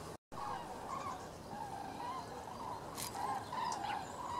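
A flock of common cranes calling in flight overhead: many overlapping, wavering trumpeting calls. The sound drops out for a moment just after the start, and there is a single click about three seconds in.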